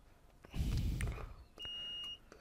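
Fluke digital multimeter giving a steady high continuity beep for about half a second near the end, as its probes find a connection across a diode on the power board. Before it, a short low rustle.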